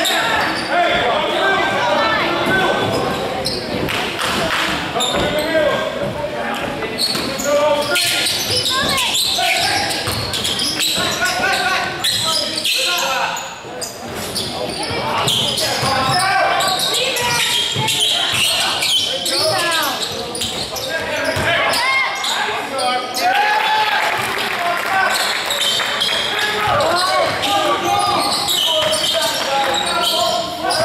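Basketball game play in a gym: a ball bouncing on the hardwood court with repeated knocks, under the scattered calls of players and spectators in a large, reverberant hall.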